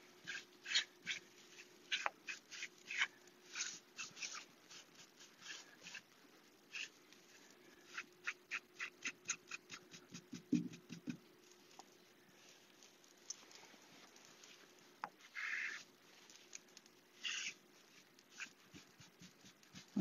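Faint, irregular rubbing and dabbing of a damp baby wipe on a chalk-painted wooden cabinet door, wiping the fresh finish back off the raised carving, in many short scuffs and clicks. A faint steady hum sits underneath.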